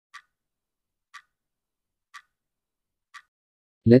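A clock ticking: four light ticks, one each second.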